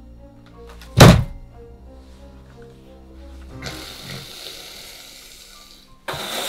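A single heavy thud about a second in as a break-action shotgun is set down on a carpeted floor, over background music with sustained tones that swells near the end.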